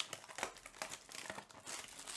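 Clear plastic shrink wrap crinkling and tearing as it is stripped off a sealed baseball card box: a quick run of sharp crackles and rustles, busiest in the second second.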